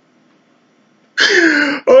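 A man's breathy laugh, one loud burst starting about a second in after a near-silent pause.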